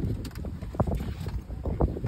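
Wind rumbling on a phone's microphone in uneven gusts, with a few sharper surges.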